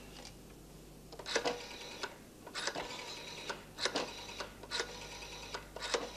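Rotary telephone dial being turned and spinning back, a short run of rapid clicks for each digit, about one digit a second.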